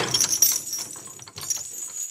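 Light metallic jingling and clinking, like small bells shaken, with many quick scattered clicks.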